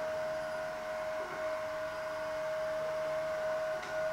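Steady hum with one clear mid-pitched tone and fainter higher tones over a low background hiss; nothing starts or stops.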